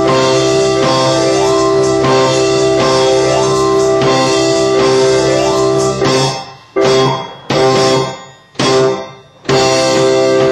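Band music with sustained keyboard chords over bass and guitar. Near the end the band stops abruptly three times, each stop followed by a fading ring, before it comes back in.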